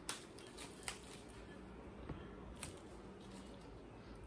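Quiet handling sounds: a few faint, short clicks and rustles as gloved hands work a block of soap base on a cutting board, over a low steady room hum.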